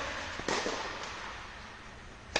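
Tennis rally: a racket strikes the ball once about half a second in, a sharp crack that rings on in the echo of an indoor tennis dome. The echo of the previous shot is still fading as it lands.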